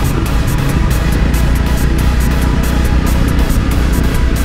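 Background music with a steady beat, over the low, steady running of a Honda CBR250R's single-cylinder engine while riding.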